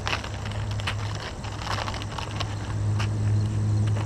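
Plastic soft-bait package being handled, crinkling in irregular short crackles, over a steady low hum that grows louder in the second half.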